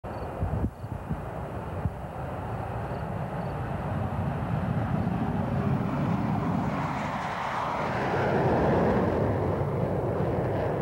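Two F-15 Eagle fighter jets taking off together, their twin Pratt & Whitney F100 turbofans giving a continuous jet roar that builds steadily and is loudest near the end.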